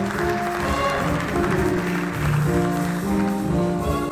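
Jazz big band playing, with the brass and saxophone sections holding sustained chords that shift in steps over drums.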